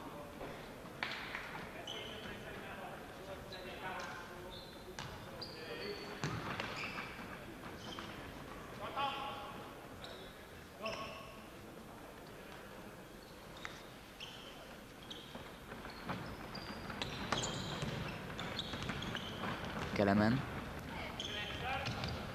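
Futsal ball being kicked and bouncing on a wooden sports-hall floor in a series of sharp knocks, with short high squeaks and players' voices ringing in the large hall. The voices grow louder near the end.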